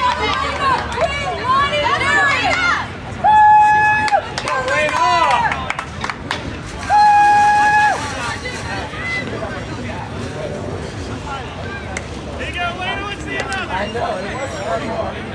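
Voices of players and spectators calling out and chattering at a softball field. Two steady, one-second tones sound about three and seven seconds in, each louder than the voices.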